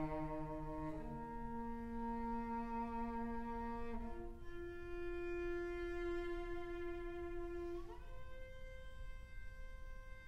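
A cello and an upper string instrument playing long, soft bowed notes, each held for several seconds before the pitch changes, with a short upward slide about eight seconds in.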